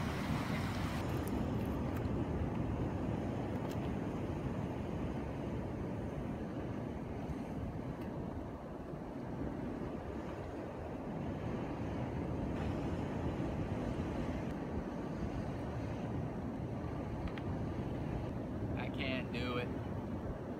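Steady rumbling wind on the microphone mixed with the wash of ocean surf against the cliff base below.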